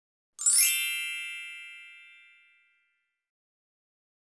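Logo sting sound effect: a single bright chime about half a second in, with a quick upward sparkle of high tones, ringing out and fading away over about two seconds.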